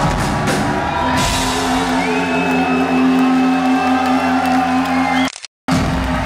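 Live rock band with electric guitars, bass and drum kit, playing loud and then holding one sustained chord. The sound cuts out for about half a second near the end.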